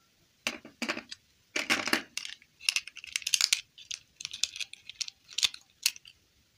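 Small plastic doll and its stiff plastic clip-on dress handled and pressed together: an irregular run of plastic clicks, taps and scraping rustles, ending in a sharp click as the dress goes on.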